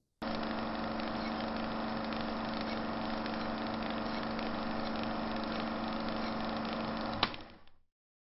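A steady mechanical drone with a low hum, starting suddenly and ending with a sharp click about seven seconds in, then fading out.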